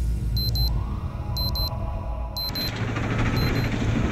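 Electronic station-logo sting: a deep bass drone with a soft rising swoosh and several pairs of short, high electronic beeps. About two and a half seconds in, a hiss joins.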